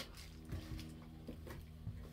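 Quiet room tone: a low steady hum with a few faint, soft knocks.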